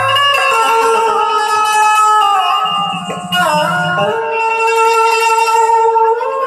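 Amplified Indian banjo (bulbul tarang) playing a film-song melody in long, sustained notes with pitch slides, with tabla accompaniment adding deep bass strokes around the middle.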